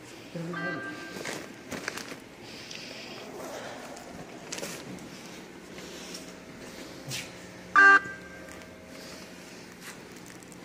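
Footsteps and the steady low hum of a large station lobby, with a short, loud pitched sound about eight seconds in.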